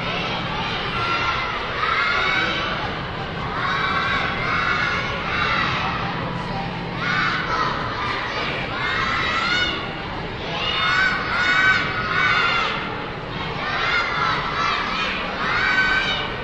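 Young children of a cheer team shouting a cheer together in short phrases, one every second or two, over the noise of a crowd cheering in the hall.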